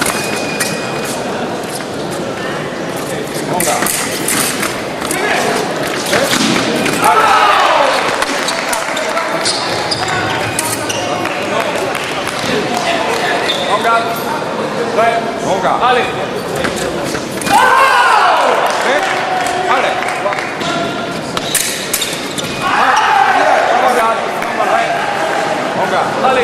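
Foil fencing in a large hall: fencers' feet stamping and thudding on the piste, and foil blades clicking and clashing. Voices and shouts sound through the hall.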